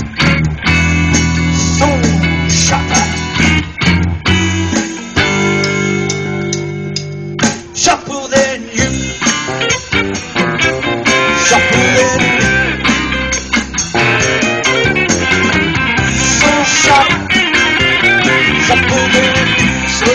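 A live blues band plays an instrumental passage between vocal lines: electric guitars, bass guitar and drums.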